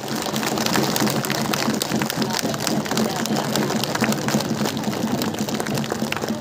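Crowd applauding: a dense, even patter of many hand claps, over a steady low hum.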